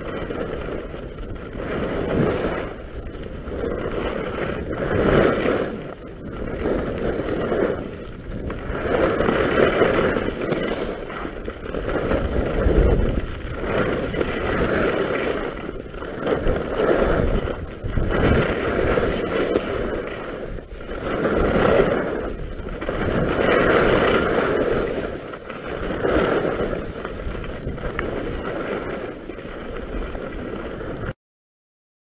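Skis carving down packed snow: a scraping hiss from the ski edges that swells and fades with each turn, every two seconds or so.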